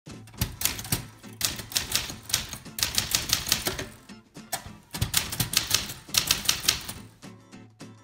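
Manual typewriter being typed on: typebars striking the paper in quick runs of keystrokes, with a short pause about halfway through.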